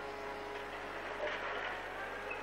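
A lumber-carrying loader's engine running steadily, with a low hum and a noisier swell about halfway through.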